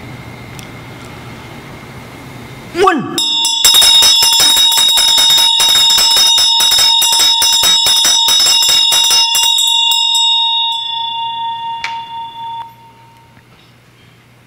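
Tibetan Buddhist ritual hand bell (ghanta) rung rapidly by shaking, starting about three seconds in. Quick strokes run for about six seconds, then it is left to ring on and fade away over the next three seconds.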